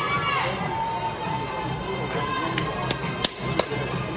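Football stadium crowd in the stands, with fans singing. Near the end come four sharp cracks about a third of a second apart.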